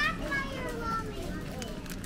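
A young child's faint, high-pitched voice, without clear words, over a steady background hum.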